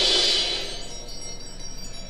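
Orchestral chimes shimmering, a cluster of high ringing tones that fades away about a second in, leaving only a low background hush.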